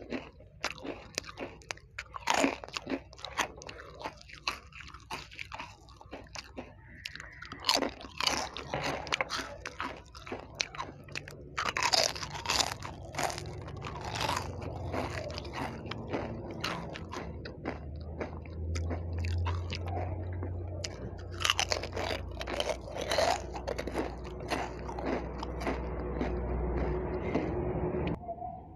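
Close-miked biting, crunching and chewing of crispy fried snacks, bite after bite, with repeated sharp crunches. A low steady hum sits under it in the second half.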